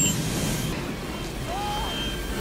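Low rumbling rush of a film's sound effects for a comet's explosive outgassing, a jet of gas venting off the surface. A short rising voice sound comes near the end.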